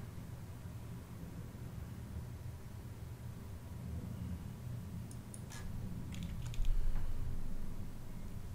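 A few faint clicks of a computer mouse and keyboard, bunched together between about five and six and a half seconds in, over a low steady hum.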